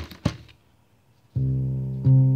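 Two quick thumps as the synthesizer's metal-covered chassis is set down on the table. About two-thirds of the way in, a Krueger 13-note string bass pedal synthesizer, played through a guitar amplifier, starts a steady, sustained low bass note.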